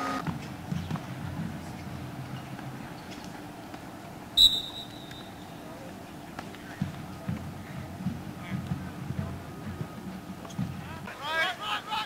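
Outdoor practice-field ambience: faint, indistinct voices over an uneven low rumble, with one sharp click and a short high tone about four and a half seconds in.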